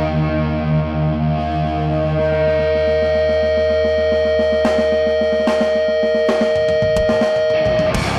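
Live stoner rock: distorted electric guitars hold long sustained notes over a droning bass, with a fast repeated picked note in the middle. A few cymbal crashes come in during the second half, building back toward the full band.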